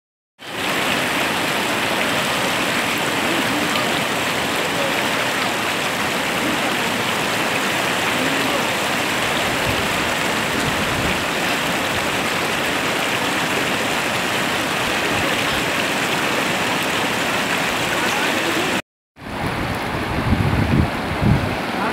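Shallow mountain stream rushing over rocks and pebbles, a steady wash of water noise that cuts out for a moment just before the end.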